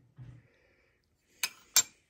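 Two sharp clicks, about a third of a second apart, as a small metal adapter plate and mounting bar are set down on a stone countertop.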